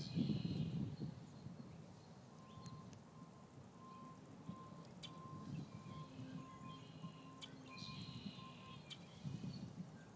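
Faint outdoor ambience: a low rumble, loudest in the first second, and a distant electronic beep repeating about one and a half times a second through the middle. A few high chirps come near the start and again about eight seconds in.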